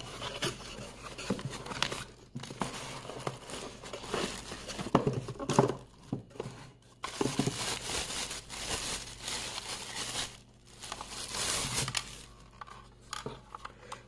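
Cardboard box flaps and a clear plastic bag being handled, with rustling, crinkling and small clicks, in several spells with short pauses, as an electric bilge pump is unpacked from its box and plastic wrapping.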